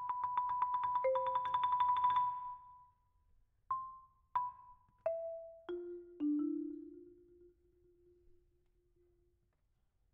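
Marimba One concert marimba: a fast run of repeated strokes on one high note for about two seconds, then five single struck notes stepping down in pitch, the last low note ringing for about three seconds as it fades.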